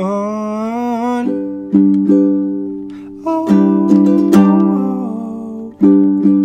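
Ukulele chords strummed and left to ring, a new chord struck every half second to a second. A man's held sung note carries over and stops about a second in.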